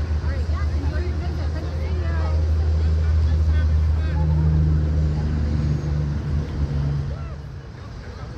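Wind buffeting the microphone, a low rumble that swells midway and eases near the end, with faint distant shouting voices over it.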